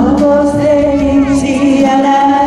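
A song performed live: a singer holds one long note with a slight waver, sliding up into it at the start, over instrumental accompaniment.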